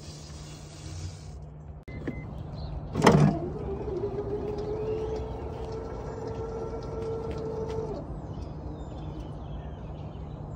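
A loud clunk, then the electric drive motors of a power wheelchair whining steadily for about five seconds as it drives up the ramp into an accessible minivan.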